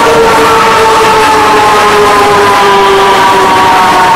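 Euro-Sat indoor roller coaster train running on its track, heard from on board: a loud, steady rolling roar with a whine of several tones that slowly falls in pitch.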